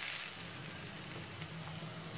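Shredded chicken and mashed potato frying in oil in a nonstick pan: a quiet, steady sizzle.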